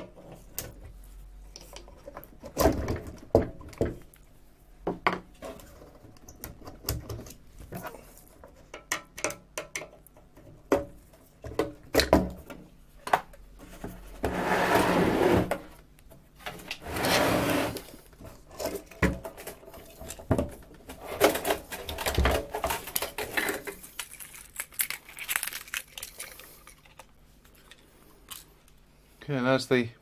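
Irregular clicks, knocks and light metallic clatter of hands working quarter-turn screws and handling the sheet-metal panels of a medical machine's pump assembly as it is freed and lifted out, with two longer scraping noises about halfway through.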